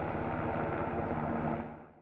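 Firefighting helicopter flying, its rotor beating in a fast steady pulse over a rushing noise, fading out near the end.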